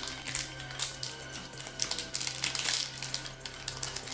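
Foil wrapper of a Magic: The Gathering collector booster pack being crinkled and torn open by hand, in short crackles that are thickest from about two to three seconds in.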